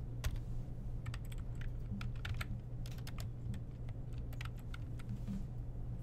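Typing on a computer keyboard: irregular runs of key clicks as a line of code is entered, over a steady low hum.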